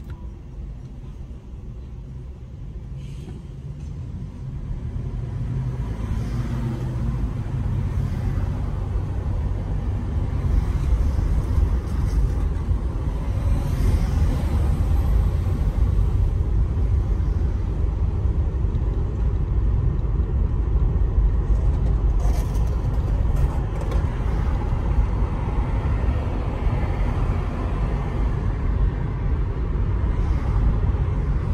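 Road and engine noise of a car heard from inside as it pulls away from a stop: a low rumble that builds over the first ten seconds or so as the car picks up speed, then holds steady while it cruises.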